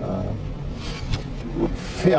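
A gap in a man's speech played backwards: a steady low hum with short, hissy, reversed breath and consonant fragments about a second in and again near the end.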